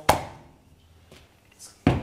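A ball of bread dough dropped into a plastic mixing bowl with a sharp thud that rings briefly. Near the end comes a second sharp knock as the bowl is handled on the stainless steel counter.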